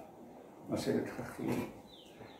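A man's voice saying two short, quiet fragments about a second apart, after a brief hush.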